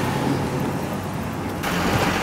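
Steady road traffic noise, with an abrupt change in the sound about one and a half seconds in.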